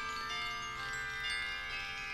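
Music in a pause between sung lines of a late-1960s psychedelic song: several sustained, ringing tones held steady, quieter than the vocal passages around them.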